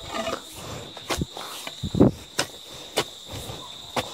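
Long-handled hoe chopping into weedy soil, a strike about every half second with the loudest about two seconds in, over a steady high drone of insects.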